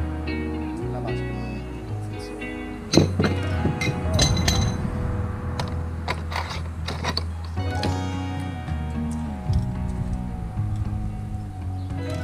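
Background music, with a run of sharp metallic clinks and knocks from about three to seven seconds in as stainless-steel sluice parts are handled and fitted together.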